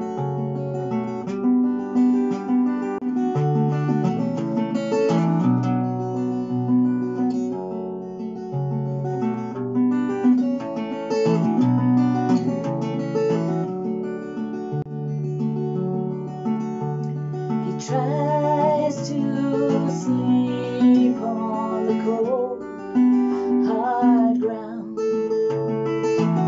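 Acoustic guitar playing the instrumental introduction to a slow song, a steady pattern of picked and strummed chords.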